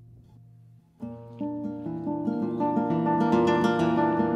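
Solo acoustic guitar music: a low held note fades away, then about a second in a new phrase of plucked notes starts and builds louder.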